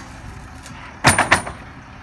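A bundle of lumber coming off a tilted roll-off truck bed and landing: three loud bangs in quick succession about a second in, with a short metallic ring.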